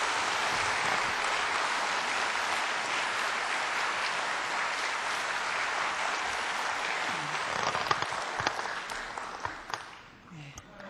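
Congregation applauding in welcome: steady clapping for about seven seconds that then thins out and fades, with a few last scattered claps near the end.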